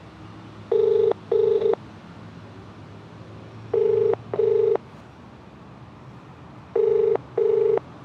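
Telephone ringback tone from a mobile phone's loudspeaker: three double rings about three seconds apart, the outgoing call still ringing and not yet answered.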